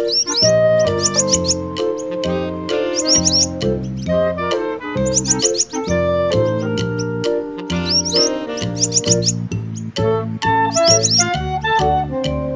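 Upbeat children's background music with clusters of short, high bird chirps recurring every two to three seconds.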